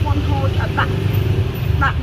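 A tuk-tuk's engine running with a steady low rumble under a woman's talking.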